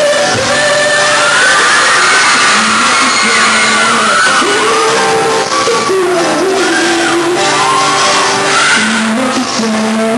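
Live solo performance: a male voice singing a pop melody over strummed acoustic guitar, with the sound of a large hall.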